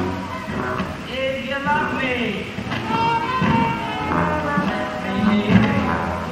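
Live theatre pit orchestra playing as a musical number gets under way, heard from the audience in a large hall, with voices over it.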